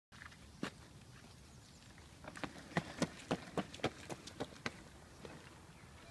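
Quick footsteps on asphalt, a run of about ten sharp taps at roughly four a second lasting a couple of seconds, with a single tap before them.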